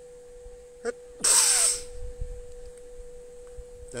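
A man blowing his nose into a cloth: one loud, noisy blast about a second in, lasting about half a second.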